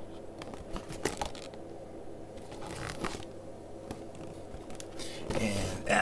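A cardboard game box being handled and shifted on a tabletop: scattered scrapes, rustles and light knocks, a few more near the end.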